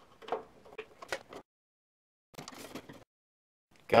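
A few light clicks and knocks, then a short scratchy scrape, of a hand screwdriver working a small screw out of an RV furnace's sheet-metal mounting, with dead-silent gaps in between.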